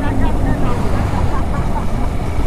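Steady rumble of wind and engine noise from a Honda motorcycle cruising along a highway at a constant speed, heard from the rider's position.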